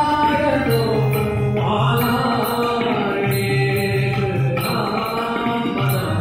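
Devotional bhajan: a man singing over sustained harmonium chords, with a drum keeping a steady beat underneath.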